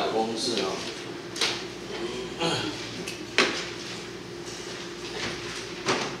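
Light clacks and knocks of whiteboard markers and other small objects being handled at the board's tray, five or so separate hits a second or so apart.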